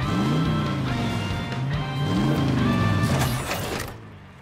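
Cartoon engine sound effect of a small construction vehicle revving up and down twice as it drives in, over background music. Near the end comes a run of quick mechanical clicks and clanks: the Transformers transforming sound as the vehicle turns into a robot.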